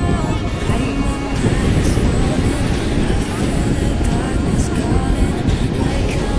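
Sea waves washing around feet at the water's edge, a loud, continuous rushing noise with music and voices behind it.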